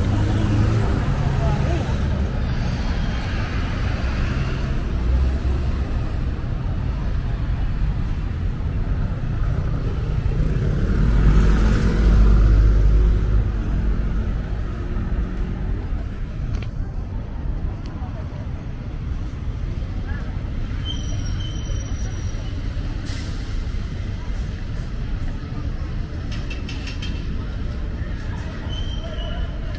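City street traffic: cars, buses and trucks running past steadily, with a heavier vehicle passing louder about eleven to thirteen seconds in.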